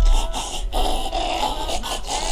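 Pug snorting and snuffling, with two short breaks just past half a second in.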